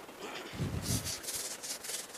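Chalk scratching on a chalkboard in a quick run of short strokes as small circles are drawn.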